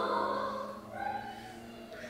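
A young boy crying quietly, with faint breathy whimpers over a low steady hum.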